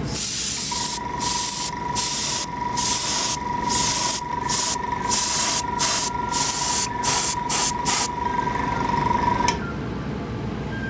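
Airbrush spraying grey surfacer in about a dozen short hissing bursts over some eight seconds. Under it the Sparmax Power X compressor, switched on automatically by the airflow, runs as a steady tone and cuts out about a second and a half after the last burst.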